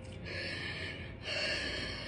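A woman drawing two long, shaky breaths while crying, the second starting a little over a second in.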